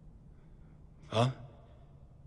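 A man's single short questioning "huh?", about a second in, over a faint steady low hum.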